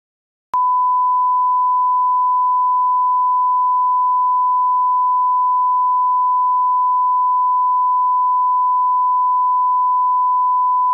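Broadcast test tone: the steady 1 kHz reference beep that accompanies colour bars. It switches on abruptly about half a second in and holds at one unchanging pitch and level.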